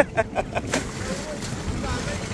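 Water rushing along the hull of a small wooden boat under tow, over the low steady rumble of the towing trawler's engine. A quick run of short voice sounds comes in the first second.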